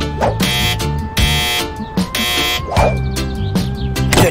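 Cartoon doorbell buzzer pressed twice in quick succession, two short buzzes in the first two seconds, over background music.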